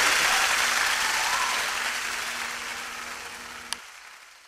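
A steady outdoor hiss, like wind or running water, fading steadily away, with a faint low hum under it and a single sharp click near the end.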